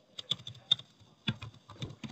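Computer keyboard being typed on: about a dozen quick, irregular keystroke clicks, with a short pause partway through, as text is deleted and retyped.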